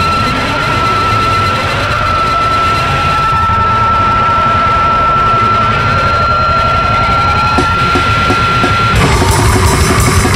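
Heavy distorted sludge/powerviolence music: one steady high guitar-feedback whine held over a thick rumbling wall of distorted guitar, bass and drums. The whine cuts off about nine seconds in and the music turns louder and harsher.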